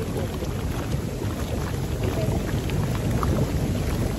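Hot tub with its jets running, the water churning and bubbling in a steady, deep wash of noise.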